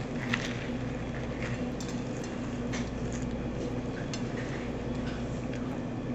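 A person chewing a bite of a toasted peanut butter and bacon sandwich: scattered faint crunches and mouth clicks over a steady low hum.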